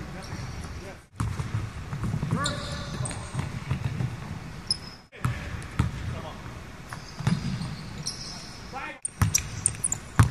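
Basketballs bouncing on the court in a large empty arena, with distant voices of players. The sound drops out briefly three times.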